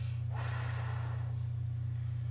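A man breathing out hard once, a breath of about a second starting shortly in, over a steady low electrical hum.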